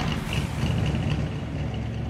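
Vehicle engine idling with a steady low rumble.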